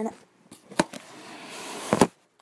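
Handling noise as things are set down: a sharp click about a second in, then a rustle that grows louder and ends in a knock.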